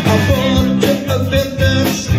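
A live blues band plays a mid-tempo soul number on electric guitars, bass and drums, with regular drum hits and a long held melody note over the beat.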